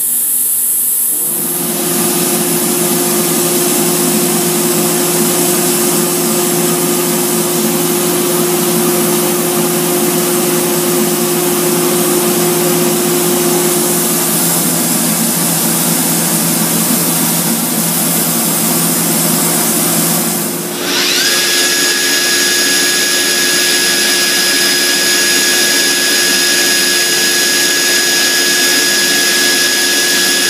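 Northwood Model 58E CNC router running: a loud steady machine noise with a low hum starts about a second in. About two-thirds of the way through it dips briefly, and a high whine rises in pitch and then holds steady.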